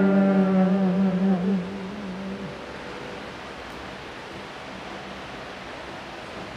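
The last held chord of sung church music, steady in pitch, fading out about two seconds in, followed by steady room hiss.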